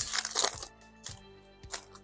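Foil wrapper of a Pokémon trading-card booster pack crinkling as it is torn open, loud for about the first half second, then a few faint clicks as the cards are handled.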